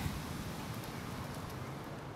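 Steady outdoor background noise, an even hiss with a few faint ticks.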